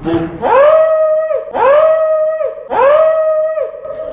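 A voice-like 'ooo' note sounded three times in a row. Each note swoops up at the start, holds one steady pitch for about a second, then drops away.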